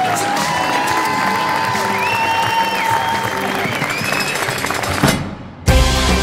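Wedding guests applauding and cheering over background music, with high gliding tones above the crowd. About five seconds in, the sound dips briefly, then music with a heavy bass beat takes over.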